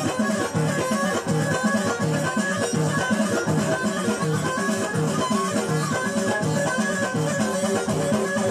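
Amazigh (Berber) folk music played live at a wedding party: a steady, driving beat under a repeating melodic line.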